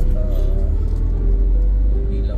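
Low engine and tyre rumble of an oncoming bus passing close by, heard from inside a moving car, swelling about halfway through, over steady background music.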